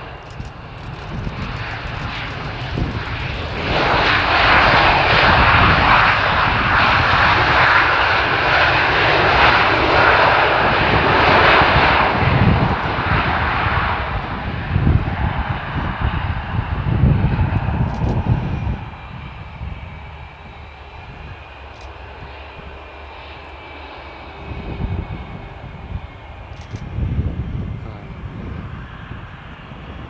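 Airbus A319CJ business jet's twin jet engines running as it moves along the runway. The engine noise swells about four seconds in, stays loud for about ten seconds, then drops off sharply near the twenty-second mark, leaving a quieter steady engine whine.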